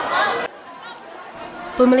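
Speech only: a young man's voice trails off about a quarter of the way in, followed by a quieter stretch of faint crowd chatter, and a new voice starts talking near the end.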